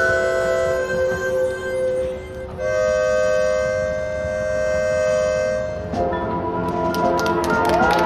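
Marching band playing a slow passage of long, held wind chords. The chord changes about two and a half seconds in, and at about six seconds more of the band comes in with a fuller, louder chord.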